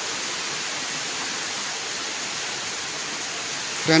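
A steady, even hiss.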